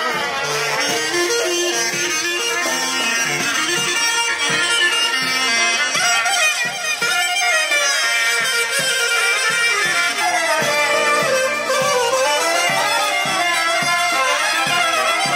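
Greek folk dance music: a reedy wind instrument plays a winding melody over a steady drum beat.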